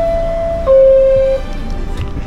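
New York City subway car door-closing chime: two steady descending tones, the second lower and louder, each lasting under a second, as the doors close. The train's low rumble runs underneath.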